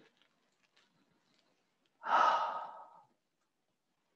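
A single audible exhale, a breathy sigh, about two seconds in. It starts sharply, lasts about a second and fades out. Around it there is near silence.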